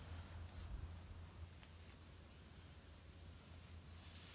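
Near silence: faint barn room tone with a low rumble and a thin, steady high whine, and one small click about a second and a half in.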